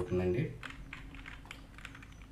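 A few light keystrokes on a computer keyboard, separate clicks, typing a search into a web form's dropdown.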